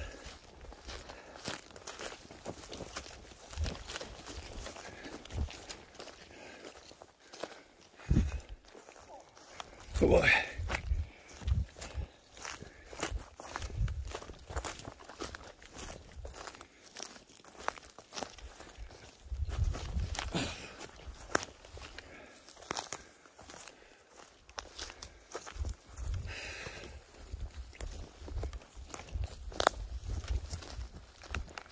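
Footsteps walking through dry grass and forest litter, an irregular run of soft crunching steps. A short vocal sound, rising and falling in pitch, comes about ten seconds in.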